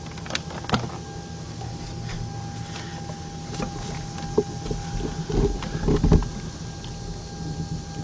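Hands working test leads and wiring in a car's engine bay: scattered clicks and knocks, with a couple of heavier thumps about five to six seconds in, while a checked probe connection is reseated. A steady thin high-pitched tone runs underneath from about a second in.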